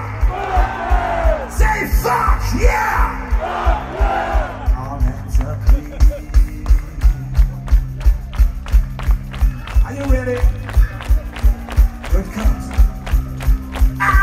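Power metal band playing live through a large PA, with an even, steady kick-drum beat, cymbals, bass and guitars. For the first few seconds a mass of crowd voices sings along over the band, then the music carries on without singing.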